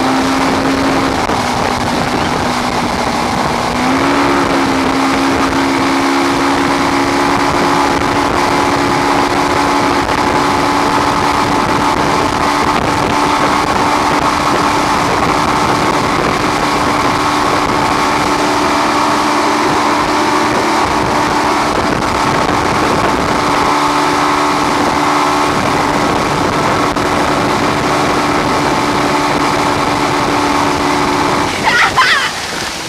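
Motorboat engine running steadily at speed while towing, over the rush of the wake and wind on the microphone. The engine's pitch dips slightly about a second in and climbs back about four seconds in.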